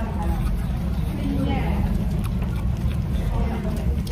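Restaurant background noise: a steady low rumble with faint voices behind it.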